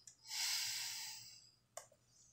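A man breathing audibly into a close microphone: one long breath lasting a little over a second, then a short sharp click near the end.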